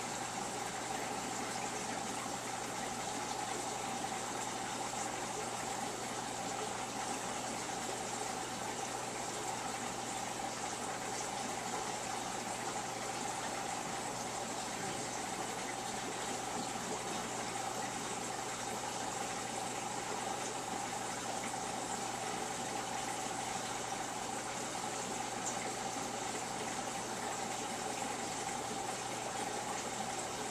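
Aquarium water pump running steadily and circulating the tank water: a constant rushing hiss with a low hum and a steady mid-pitched tone, unchanging throughout.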